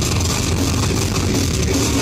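Live heavy rock band playing loudly: distorted electric guitars, bass and drums in one dense, unbroken wall of sound, heard from inside the crowd.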